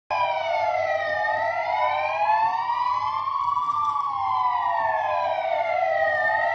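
Sirens of several emergency vehicles wailing together, their overlapping tones rising and falling slowly in pitch, about one full rise and fall every five seconds.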